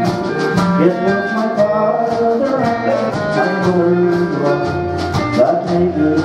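Instrumental break in a song's backing music: a melody line of held notes over a steady drum beat.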